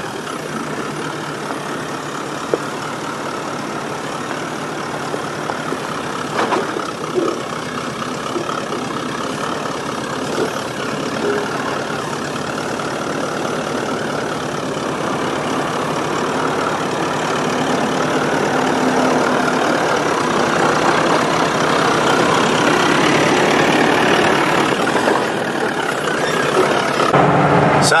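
Toyota LandCruiser VDJ79's 4.5-litre V8 turbo-diesel running at low revs as the truck crawls through a washout, growing steadily louder as it comes closer.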